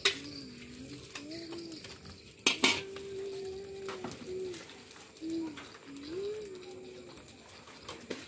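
Metal spatula knocking and scraping against a steel wok of fried rice, with a couple of sharp clangs about two and a half seconds in. A low, wavering tone rises and falls in short phrases underneath.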